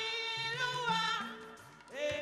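Church choir singing, holding long notes with a slight waver in pitch, trailing off near the end.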